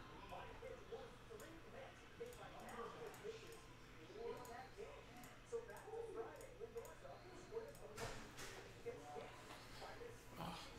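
Quiet room with faint, indistinct voices in the background and light clicks and rustles of a trading-card pack being handled, with one slightly louder rustle about eight seconds in.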